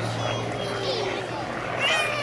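Hawker Hurricane's Rolls-Royce Merlin V12 engine giving a steady drone as the fighter flies its display overhead, with people talking close by.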